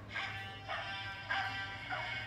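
A novelty sound greeting card playing a short, tinny tune through its small speaker once it is opened. The tune is a string of repeated notes about every half second, some of them dog-like bark sounds that bend in pitch.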